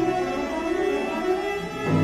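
A string orchestra of violins, violas and cellos playing a contemporary piece: high notes held steady over shifting lower chords, with a new, louder entry near the end.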